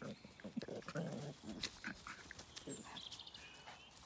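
Puppies yapping and growling as they play-fight, a quick run of short sounds in the first second and another brief one near the end.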